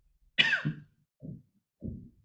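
A person coughing: one sharp, loud cough about half a second in, followed by two quieter, shorter ones.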